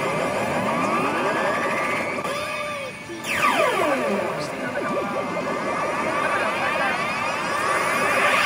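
Sanyo P Umi Monogatari 5 pachinko machine playing its electronic reach music and sound effects with two pufferfish 2s lined up on the reels, the sign of a reach that may turn into a jackpot. Repeated rising sweeps, with a long swoop falling in pitch about three seconds in.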